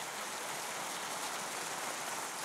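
A large congregation applauding: many people clapping together in a steady, even wash of sound.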